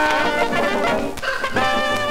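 Instrumental passage of a 1940s novelty dance-band recording, with brass prominent, played from a 78 rpm shellac record.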